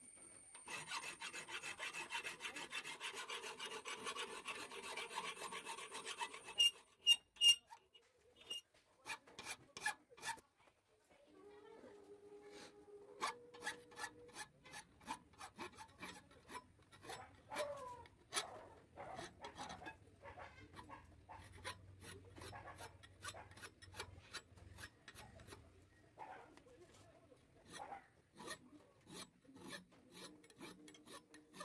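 Hand file rasping on the steel tip of a center punch held in a bench vise: quick, continuous strokes for the first six seconds, then a few sharp metallic knocks around seven seconds in, followed by slower, scattered file strokes.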